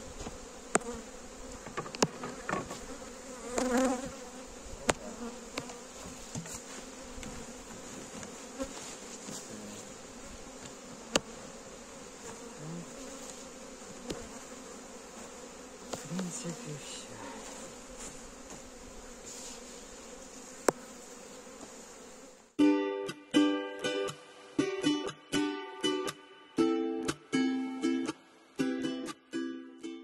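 Honey bees humming around an open hive, with scattered sharp clicks and rustles as the hive is covered over. About three quarters of the way through this cuts off abruptly and gives way to plucked-string music, a quick run of notes.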